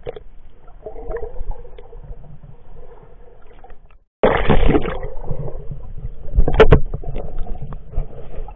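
Muffled water sloshing and bubbling picked up by an action camera in its waterproof case as it moves at and below the surface of a pond. The sound drops out for a moment about four seconds in, then comes back louder as the camera goes under, with a few sharp splashes near the end.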